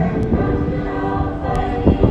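Choir singing held chords, with a loud thump near the end.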